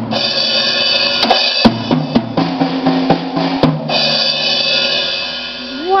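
Ludwig drum kit struck by a toddler: a handful of hits at uneven intervals on the drums and cymbals, the kit left ringing between strokes.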